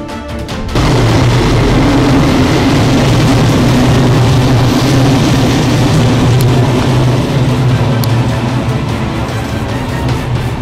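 A passenger train of red-and-cream coaches passing close by: a loud, steady rumble and rush that cuts in suddenly about a second in and eases slightly near the end.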